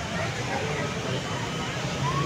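Steady outdoor street ambience: faint, indistinct voices from a waiting crowd over a continuous low hum, with no distinct event.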